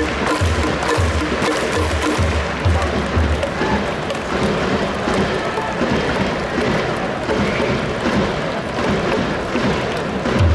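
Ballpark cheering: rhythmic cheer music with a steady beat and the crowd clapping along in time.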